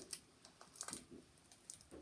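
A few faint, scattered clicks and rustles of hands handling a plastic DVD case as it is opened.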